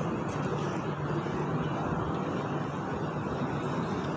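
Steady city background noise, a traffic hum heard from high up.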